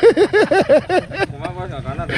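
A man laughing in quick repeated syllables, then quieter talk.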